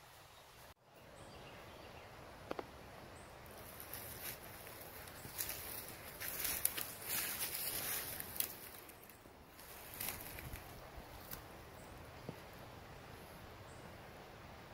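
Rustling and crackling of footsteps moving through brush and leaf litter, loudest through the middle of the stretch, with a few single snaps later on.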